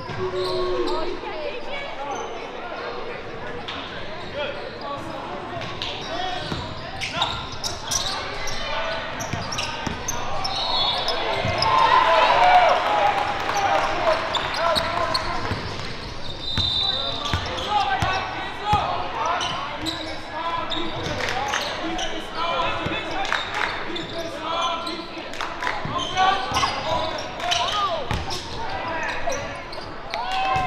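Live court sound of a basketball game: a basketball bouncing on the hardwood floor in repeated sharp thuds, mixed with players' and spectators' shouts and calls, which grow louder about twelve seconds in.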